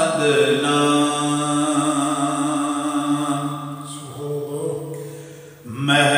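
A man's voice singing an Urdu naat, drawing out one long held note that fades away after about four seconds, with a short break before the singing picks up again at the very end.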